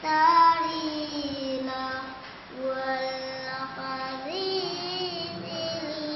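A young girl reciting the Quran in the melodic tilawah style: long held notes that glide and turn in pitch, with a short breath pause about halfway through.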